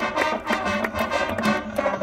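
Marching band playing: brass chords held over repeated drum and percussion hits.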